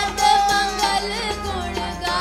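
Sikh Gurbani kirtan: voices singing a hymn over a steady harmonium accompaniment, one note held and then bending in pitch.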